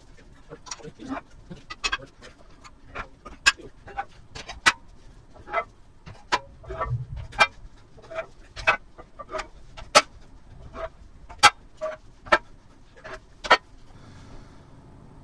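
Iron weight plates being stripped off a barbell in a squat rack and handled: a string of irregular sharp metal clanks, some much louder than others, with a dull thud about halfway through.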